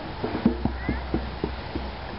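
A quick run of about eight knocks that spread further apart and fade away, with a low boom under them: live percussion struck during the show.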